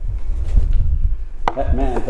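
Loud, uneven low rumbling and thumping on a close microphone. About a second and a half in there is a sharp click, and a man's drawn-out preaching voice starts up right after it.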